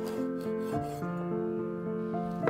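A chef's knife slicing through raw sausage onto a wooden cutting board, a rubbing, rasping cut, with background music playing over it.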